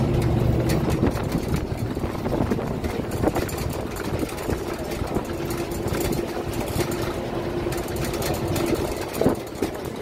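Tour bus engine running and road noise heard from the upper deck of the moving bus, with a steady engine hum that fades after the first second and returns from about five to nine seconds in.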